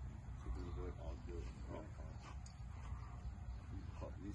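Faint, distant voices talking over a steady low outdoor rumble.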